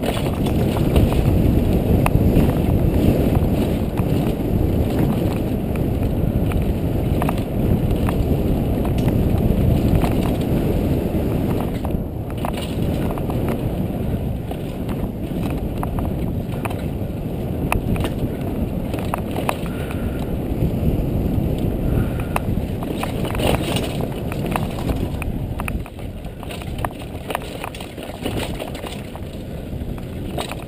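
Downhill mountain bike descending a dirt and rock trail at speed, heard from an onboard camera: steady wind rush on the microphone and tyre noise, broken by frequent sharp clicks and rattles as the bike goes over bumps.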